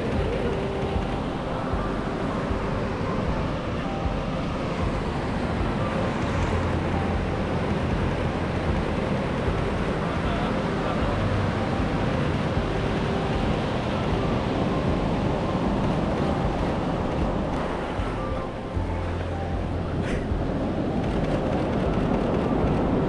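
Surf washing up a sandy beach, with wind on the microphone rumbling steadily in gusts.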